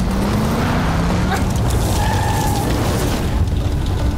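Tense film-score drone: a steady low rumble with a few faint held tones over it, and a higher pair of tones coming in about two seconds in.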